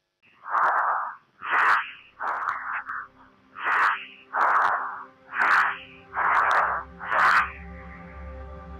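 Fast, heavy breathing inside a pressure-suit helmet: about nine loud breaths, each with a hiss, roughly one a second. Soft music fades in underneath during the second half.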